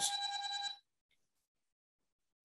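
A short electronic alert tone, like a phone ring or notification chime on a participant's line: one steady pitch that steps slightly down at the start, sounding for under a second before cutting off.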